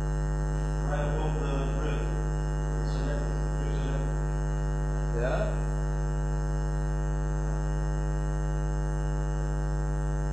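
Steady electrical mains hum with a buzzy stack of overtones. A few faint, brief sounds rise above it about a second in and again around five seconds in.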